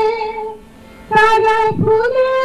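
A woman singing long, held notes into a microphone. Her voice fades out about half a second in and comes back just after a second.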